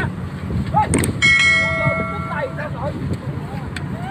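A click about a second in, then a bright bell chime that rings out and fades over about a second: the sound effect of a subscribe-button animation. Underneath, a Kubota combine harvester's engine runs steadily, with scattered voices.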